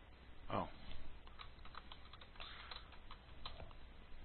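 Computer keyboard typing: an irregular run of quick keystrokes over a few seconds, picked up by a nearby desk microphone.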